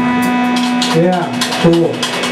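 Live rock band between songs: an electric guitar note held and ringing through the amplifier, with short shouted vocal sounds into the mic about a second in and again near the end, over sharp high ticks.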